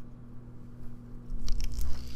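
A string pulled off a toy gyroscope's axle, close to the microphone, to spin up its rotor. After a quiet start, a short rough rasp with clicks and a low rumble comes near the end.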